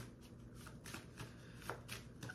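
Faint handling of a tarot deck, its cards shuffled or flicked off-picture with a few soft ticks.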